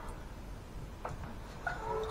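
A cat giving a short, faint meow near the end, over quiet room tone.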